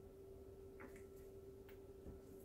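Near silence: room tone with a steady hum, and a few faint ticks as a plastic squeeze bottle of acrylic paint is squeezed and lifted away.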